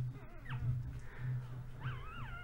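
Newborn American Bully puppy crying in thin, high squeaks: a short falling cry about half a second in, then a rising, wavering cry near the end.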